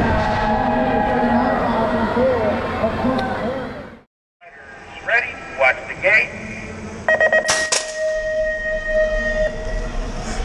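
A track announcer calling the race over the arena PA, then, after a brief silence, a BMX starting gate's electronic start cadence: a few short rising tones, a quick run of beeps and a long steady tone, with a sharp metallic bang about two-thirds of the way through as the gate drops.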